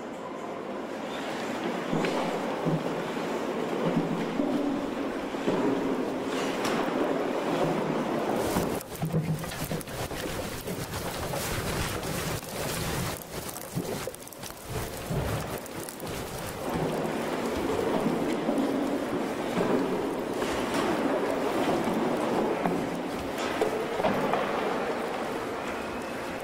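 Shake table shaking a plastered straw-bale test house in a simulated earthquake: a continuous rumbling, rattling noise with crackling as the plaster cracks and crumbles. It eases for a few seconds in the middle, with some heavier knocks, then builds again.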